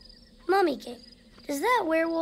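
A character's voice making two short gliding vocal sounds, one about half a second in and a longer one about a second and a half in, over a steady chirping of crickets.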